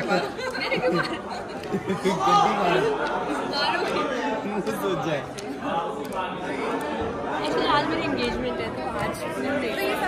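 Several people talking over one another, with a roomy echo.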